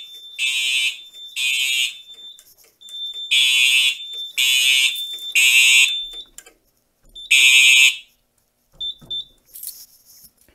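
Fire alarm horns sounding in the temporal-three evacuation pattern driven by a Simplex 4010 panel in alarm from a pull station: three half-second blasts, a pause, three more, with a thin steady high tone running between them. After one last blast about eight seconds in the horns stop as the alarm is silenced at the panel.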